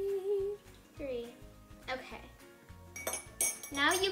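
A metal teaspoon clinks against glass a few times as water is spooned from a glass measuring cup into a glass baking dish. Over it, a child's voice holds long sung notes.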